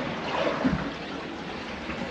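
Water trickling steadily into a catamaran's bilge through a hole. It is a sizable leak, coming from the forward peak.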